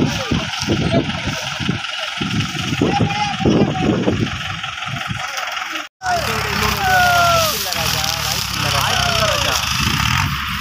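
Tractor engine running steadily under several people talking and calling out. The sound drops out for an instant about six seconds in, then the engine and voices carry on.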